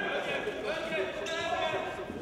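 Futsal game in a sports hall: players' voices calling across the court, echoing in the hall, with the ball and feet thudding on the court floor.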